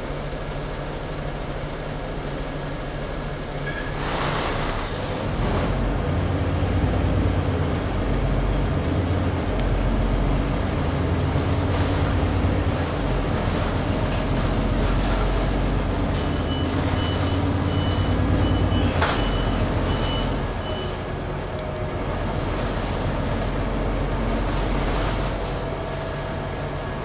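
City bus heard from inside the cabin: a hiss of air about four seconds in, then the diesel engine working louder as the bus pulls away and gathers speed. A run of short high beeps comes after the middle, and a brief sharp hiss follows before the engine eases off and builds again.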